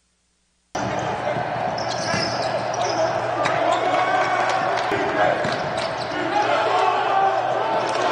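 Live basketball game sound on an indoor court: the ball bouncing on the hardwood, with many short knocks, among indistinct voices of players and others in the arena. It starts suddenly under a second in.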